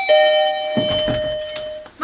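Two-note ding-dong door chime: the lower second note sounds at the start and rings out, fading over nearly two seconds.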